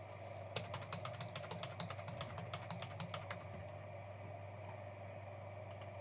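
Typing on a computer keyboard: a quick run of about twenty keystrokes starting about half a second in and stopping after about three seconds, over a steady low hum.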